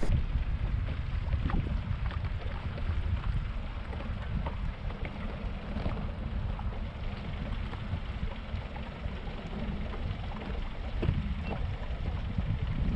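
Steady low rumble of wind and water around a small fishing boat moving at trolling speed on open water, with a few faint knocks and ticks.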